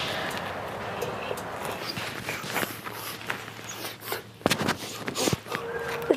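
Footsteps and scattered light knocks and clicks over a steady background hiss, the sharpest knocks coming about four and a half to five seconds in.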